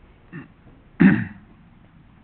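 A person clearing their throat once, about a second in, with a falling pitch, after a faint short vocal sound just before.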